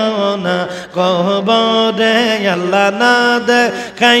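A man chanting Bengali zikr, sung Islamic remembrance, into a microphone. He holds long notes that bend slowly in pitch, with short breaks between phrases.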